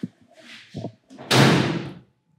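A door being shut: faint knocks, then one loud slam about a second and a half in.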